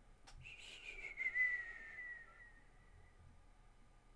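A person whistles one long falling note that slides slowly down in pitch and fades out after about two and a half seconds. A single sharp click comes just before it.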